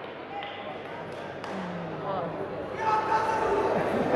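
Voices in a large sports hall: a few faint calls and a low voice near the middle, then a raised, held shout in the last second, with the hall's echo.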